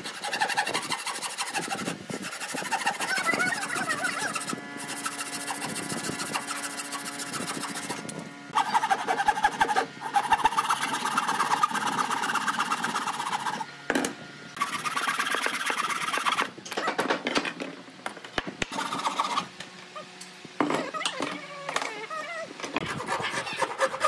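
Hand saws cutting pine boards: fast back-and-forth strokes of a long handsaw through a clamped stack of boards, then of a wooden frame saw, in runs of a few seconds broken by short pauses. Quieter near the end.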